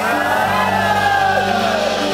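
A studio audience of young women calling out one long, falling "ooh" together, over background music.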